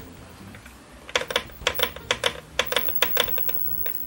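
Replaced front-panel pushbuttons on a Philips 14CN4417 CRT television being pressed over and over, a rapid irregular run of sharp clicks starting about a second in, over a faint hiss. The new switches click cleanly and are working properly.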